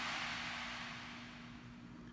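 Faint background hiss that slowly fades away, over a steady low hum.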